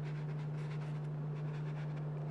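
A stiff stencil brush scrubbing paint through a stencil onto fabric in quick circular strokes: a soft, rapid scratching. Under it runs a steady low electrical hum.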